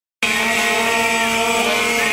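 Crowd blowing plastic horns (Tröten), several steady buzzing tones at different pitches held together, starting suddenly.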